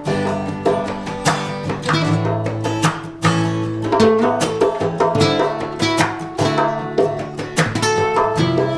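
Acoustic guitar strumming chords in a steady reggae rhythm: the instrumental intro of an acoustic song.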